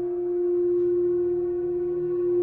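Singing bowl ringing with one sustained steady tone and shimmering overtones, swelling and easing in loudness every second or two.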